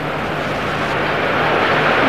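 Steady background noise with a faint low hum, the recording's room or line noise heard in a pause between words.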